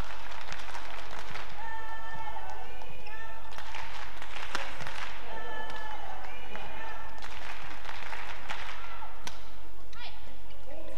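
Badminton rally: repeated sharp racket hits on the shuttlecock and shoes squeaking on the court floor, with an especially sharp hit about nine seconds in.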